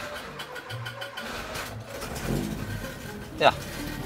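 Citroën CX engine being started with the key: the starter cranks with an even, rhythmic churn, then the engine catches about two seconds in and settles into a steady idle. It is a hard start that always takes some effort.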